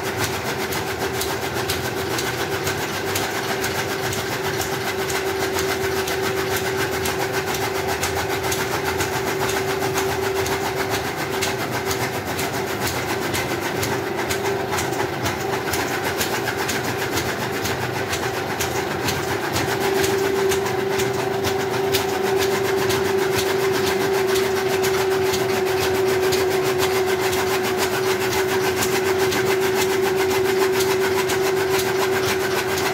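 A machine running steadily: a constant hum with a fast, even clatter, growing a little louder about two-thirds of the way through.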